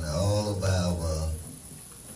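A man's deep voice intoning long, drawn-out syllables in a chanting, sing-song way, which stops about one and a half seconds in.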